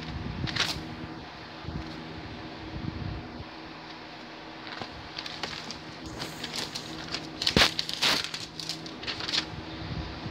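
Pages of a paper Bible being turned and rustled while leafing through it for a verse, with a few louder crackling page turns about seven and a half to eight seconds in. A low steady hum runs underneath.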